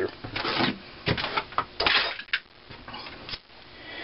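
Cast-iron carburetor mixer parts and brass fittings knocking and clinking as they are handled and set down on a cloth-covered bench, a series of separate knocks over a few seconds.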